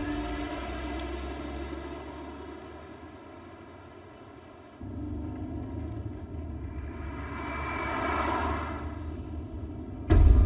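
A held music chord fading out. Then, from about five seconds in, a car driving: steady engine and road noise, with a swelling whoosh near the end.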